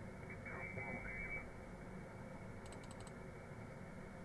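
Faint shortwave receiver hiss, cut off above a narrow audio band, streaming from an HF radio. About half a second to a second and a half in, a faint garbled voice comes through: single-sideband speech received on lower sideband instead of upper, so it sounds scrambled. Near the end comes a quick run of about four mouse clicks as the frequency is stepped.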